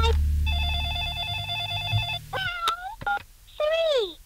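The last low chord of the heavy rock song rings out and fades, under a run of warbling, electronically mangled voice-like tones that bend in pitch and end in a falling glide. This is the mock 'hidden Satanic message' tacked onto the end of the track.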